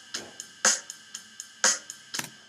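Programmed drum-kit loop playing back in Reason: a strong snare-like hit about once a second, with lighter ride-cymbal strokes ticking between the hits.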